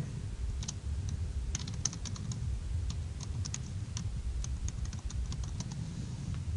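Computer keyboard typing: a run of quick, irregular keystrokes, several a second.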